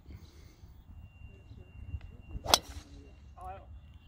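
Driver striking a black Volvik Vivid golf ball off the tee: a single sharp crack about two and a half seconds in.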